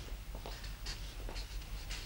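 Marker pen writing on a sheet of paper pinned to a board: a run of short, faint, irregular strokes as letters are written.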